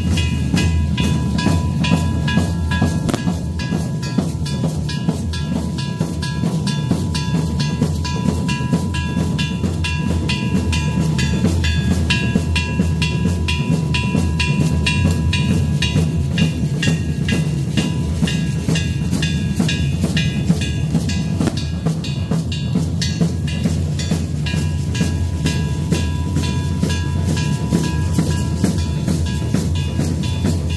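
Tamborazo band playing: a fast, even drumbeat on the drums under held notes from the wind instruments, steady and loud throughout.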